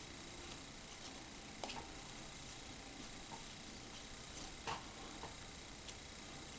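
Faint handling sounds of fingers twisting a foamiran craft-foam leaf, over a steady low hiss, with two soft clicks, one under two seconds in and another near five seconds.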